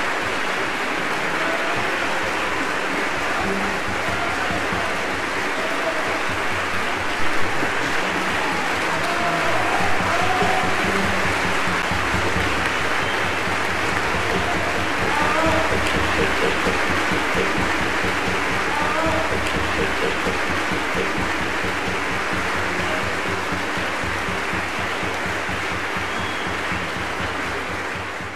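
Large concert-hall audience applauding steadily, with a few voices calling out over the clapping.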